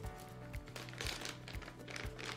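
Clear plastic packaging bag crinkling as it is handled, with a few small clicks, over background music with steady held notes.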